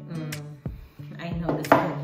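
Background acoustic guitar music, with a clatter about one and a half seconds in as the juice jug is set down on the counter.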